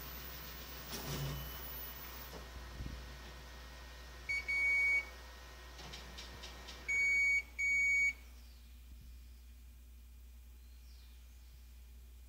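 Ricoh MP C copier's control panel beeping: a short blip and a half-second beep about four seconds in, then two half-second beeps about three seconds later. The machine's background noise drops away just after the last beep.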